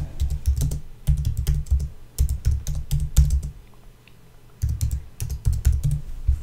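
Typing on a computer keyboard: quick runs of key clicks, with a pause of about a second in the middle.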